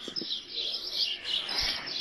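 Birds chirping steadily, high-pitched.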